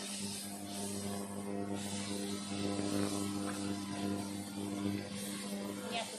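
Rice vermicelli stir-frying in a wok, a spatula stirring and scraping through the food over a faint sizzle, with a brighter hiss in the first couple of seconds. A steady low hum runs underneath.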